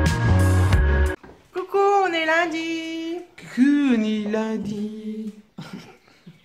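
Electronic background music with a heavy bass beat that cuts off about a second in. It is followed by a woman's voice making long, wordless, sliding sing-song sounds.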